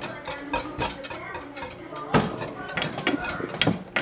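Metal wire whisk stirring water and polymer crystals in a glass quart jar, clinking irregularly against the glass.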